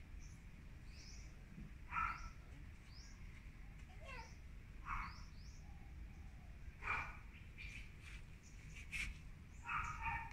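Small birds chirping faintly and repeatedly, with short high chirps about once a second. A few louder, lower short calls come about two, five and seven seconds in.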